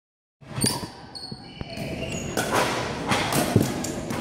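Plastic pickleball being hit with paddles and bouncing on a hardwood gym floor: a few sharp knocks that echo around a large hall, with voices faintly in the background.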